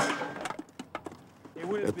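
A wooden board strikes mannequins on a moving motorcycle with a sharp knock, followed by a string of lighter knocks and clatter that die away within about a second. A man starts speaking near the end.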